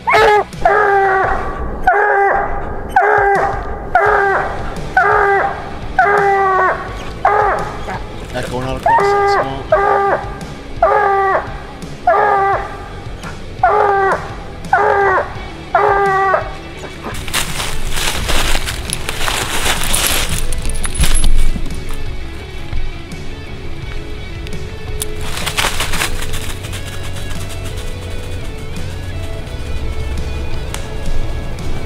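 Coonhound barking treed, a steady series of about fifteen loud barks roughly one a second that stops about halfway: the dog is baying up the tree that holds the raccoon. A few seconds of loud noise follow.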